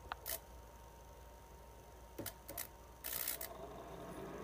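A few light clicks as a copper wire is handled against metal, then a brief hiss about three seconds in as the wire's tip meets the end of a metal conduit. The contact closes a microwave oven transformer circuit that is ballasted through a small space heater.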